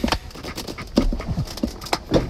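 Irregular knocks, clicks and rustles of someone shifting about in a car seat and handling a phone in the car's cabin, with a brief low creak about halfway through and the loudest knock about a second in.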